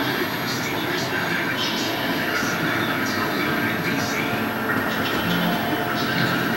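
Indistinct television broadcast voices overlapping over a steady, dense background noise.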